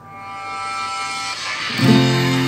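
Music swelling in with a bright, ringing tone, then near the end an acoustic guitar strums a full F barre chord that rings on.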